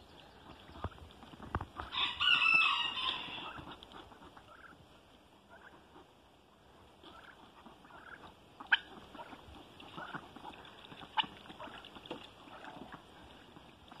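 A chicken gives one loud, drawn-out call about two seconds in, lasting over a second, followed by softer short calls and a few sharp clicks.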